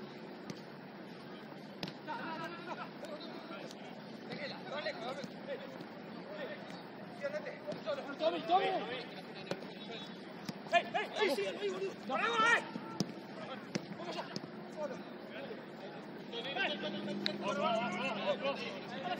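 Players shouting and calling to each other across a football pitch, distant and unintelligible. The shouts come in short calls, loudest about halfway through and again near the end, over a low murmur of voices.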